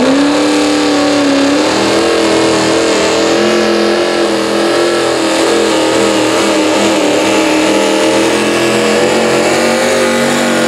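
Antique tractor's V-8 engine revving up and running hard under load as it pulls a weight-transfer sled. Its pitch climbs over the first second or so, then holds high with slight wavering.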